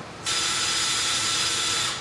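Power drill running a left-hand drill bit into a broken, hardened steel head stud, the bit cutting into the stud to make it back itself out. A steady whine that starts a moment in and stops shortly before the end.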